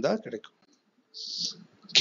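Speech: a man narrating in Tamil, trailing off in the first half second, then a pause with a brief soft hiss, and the voice coming back loudly right at the end.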